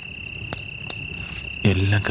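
Crickets chirping in a steady night chorus: one continuous high trill with a faster pulsed chirp above it. A couple of sharp clicks sound in the first second, and a man starts speaking near the end.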